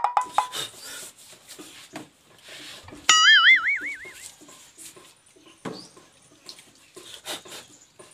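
A loud warbling, wavering whistle-like tone, added as a comic sound effect, starts suddenly about three seconds in and lasts about a second. Faint clicks and knocks are heard around it.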